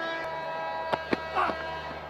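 Cricket stadium ambience between deliveries: a steady background drone with two short sharp clicks about a second in and a brief faint voice.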